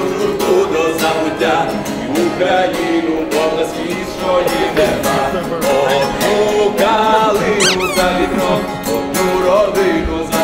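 Guitar music with singing. A brief high squeal rises and falls about three-quarters of the way through.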